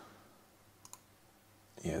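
Two quick computer mouse clicks a little under a second in, otherwise faint room tone.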